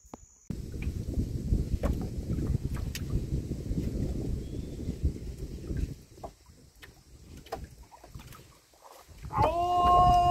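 Low wind rumble on the microphone for about five seconds, then quieter with a few light clicks. In the last moment a loud, pitched animal call begins and wavers.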